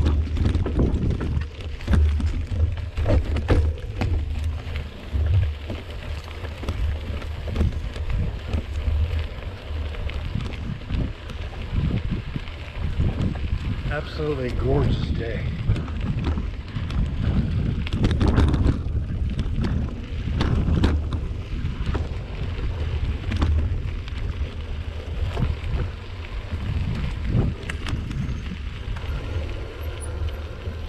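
Mountain bike ridden over a dirt singletrack: steady low wind rumble on the microphone with frequent rattles and clicks from the bike and its tyres on the trail.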